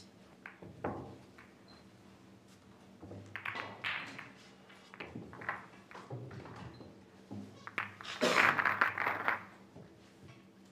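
Pool balls clicking and knocking against one another and the table in scattered strokes, with a dense, louder flurry of clacks near the end.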